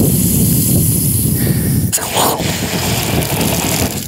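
Water running under pressure from a yard hydrant and hissing and splashing out of a broken garden-hose spray nozzle, over a steady low rumble. A sharp click comes about halfway through.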